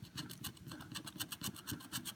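A handheld scratcher tool scraping the latex coating off a lottery scratch ticket in rapid, even back-and-forth strokes.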